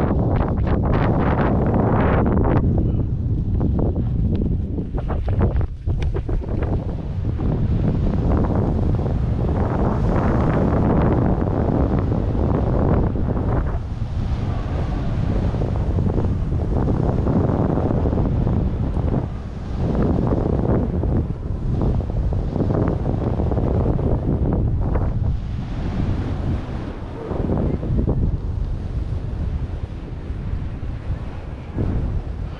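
Wind buffeting a helmet-mounted camera's microphone while riding downhill at speed, a steady loud rumble. Mixed in is the hiss of edges scraping over packed snow, swelling and fading with the turns.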